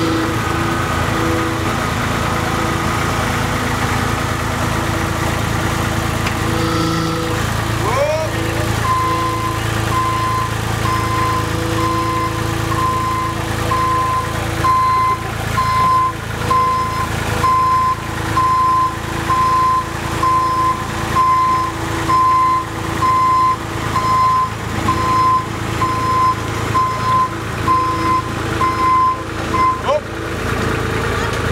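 Caterpillar CB22B tandem road roller's diesel engine running steadily. About nine seconds in, its reversing alarm starts beeping, about one beep a second, as the roller backs off the print.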